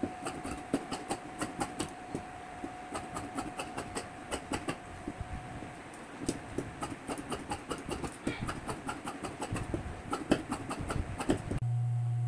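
Tailor's shears snipping through fabric on a table, an irregular run of short crisp cuts and blade clicks. Near the end, a sewing machine motor's low steady hum comes in.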